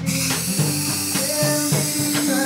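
Aerosol can spraying adhesive onto foam board: a steady hiss over music.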